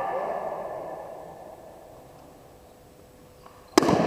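Voices fade in the first second over the hum of a quiet sports hall. Near the end, a single sharp crack of a slowpitch softball bat hitting a pitched ball.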